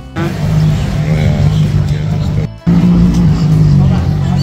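Supercar engine running, mixed with music and crowd chatter, with two brief dropouts where the recording cuts.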